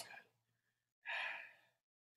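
A person sighing: one breathy exhale about a second in, lasting about half a second.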